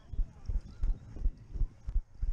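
Running footsteps on grass: the steady strides of the runner carrying the camera, each footfall a dull thud, about three a second.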